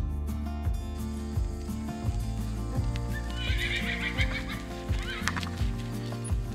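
Background music with a steady beat, and over it a horse whinnying for a second or two about halfway through.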